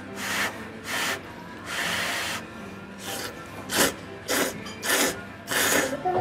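A person slurping thick ramen noodles in a run of about eight slurps, some long and drawn out, some short and quick.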